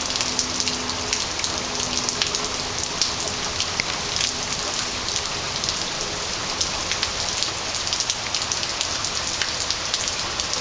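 Heavy rain pouring steadily, with many sharp drops ticking on nearby surfaces.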